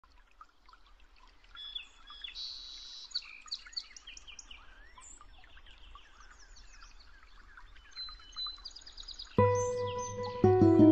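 A chorus of many small birds chirping and singing in quick overlapping calls over a low steady rumble, fading in from silence. Near the end a loud sustained musical drone comes in suddenly.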